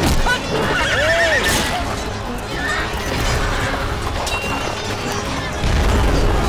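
Film battle soundtrack: horses neighing and hoofbeats amid clashes and shouts, over background music. A deep rumble swells near the end.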